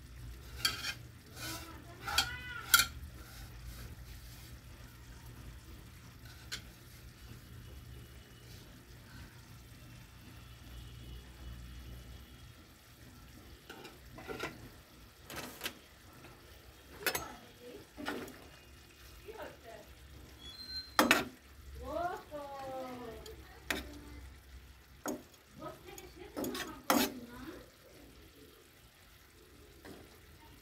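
Curry simmering in a wide black kadai over a steady low hum, with scattered clinks and knocks of a utensil against the pan, in clusters near the start and through the second half.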